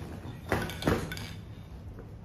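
Two sharp clacks a little under half a second apart, about half a second in, as a loaded hiking backpack is set down upright on the floor: its buckles and hardware knocking.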